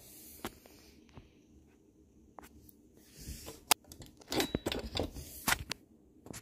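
Small clicks and knocks from handling a 1:18 scale diecast Toyota RAV4 model as its opening doors are pushed shut, with light rustling in between. The sharpest click comes a little past halfway, with a quick cluster of clicks near the end.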